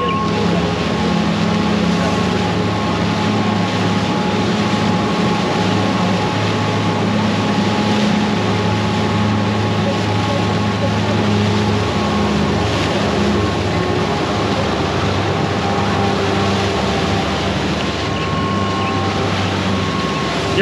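Triple outboard motors running at speed, a steady low drone over the rush of wake water and wind.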